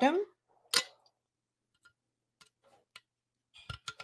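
A few sharp clicks and taps from hands working at a bottle cap stuck shut with dried sugary drink: one clear click about a second in, a few faint ticks, then a quick cluster of clicks near the end.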